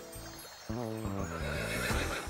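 A horse whinnying, starting about two-thirds of a second in, over background music.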